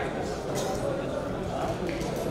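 Indistinct voices and chatter echoing in a large sports hall.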